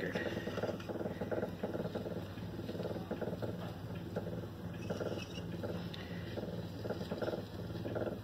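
A card dragging through a layer of Elmer's glue on a spinning Edison Diamond Disc, giving a steady, rhythmic purring rub over the turntable's low running hum.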